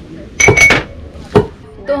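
Long wooden pestle pounding roasted coffee beans into powder in a mortar: two heavy thuds about a second apart, the first loudest with a brief ring.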